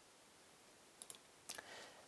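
Near silence broken by a few faint, short clicks, a quick pair about a second in and another shortly before the end.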